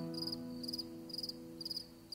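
Crickets chirping in short pulsed chirps, about two a second, over the last held chord of the music fading out.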